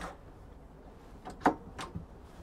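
A cupboard door's push-button latch clicking open: two or three short, sharp clicks about one and a half seconds in, over a quiet background.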